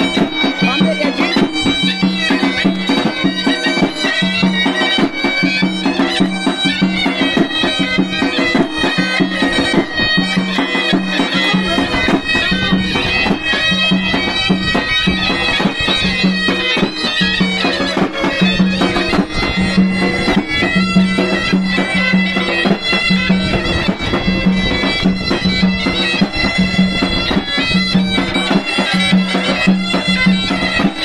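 Two zurnas playing a folk tune: one carries a shrill, ornamented melody while the other holds a steady low drone, with a large double-headed drum (nağara) beating an even rhythm underneath.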